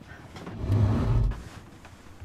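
A dresser sliding across the floor: a low scraping rumble that starts about half a second in and lasts about a second.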